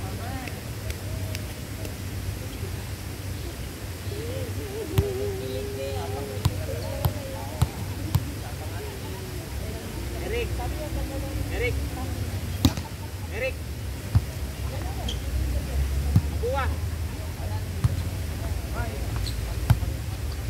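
A volleyball being struck by players' hands and forearms: sharp slaps, several in quick succession about five to eight seconds in and more spread through the rest, with players calling out between hits.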